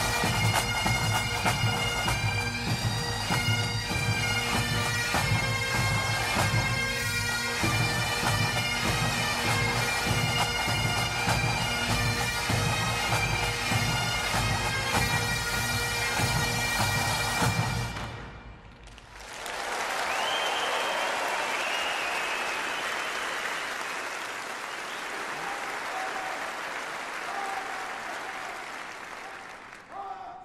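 Bagpipe music with a steady drone under held melody notes, which fades out about eighteen seconds in. A steady rushing noise follows to near the end.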